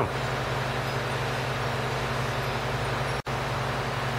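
Steady background hum and hiss of room tone, with no distinct events; the sound drops out for an instant about three seconds in, at an edit.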